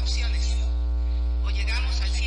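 Loud, steady electrical mains hum with a long ladder of overtones, unchanging throughout, over faint speech from a video clip being played back.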